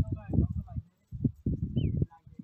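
Irregular low thumps and rumble from a microphone carried on foot, with people's voices in the first half and a short falling whistle near the end.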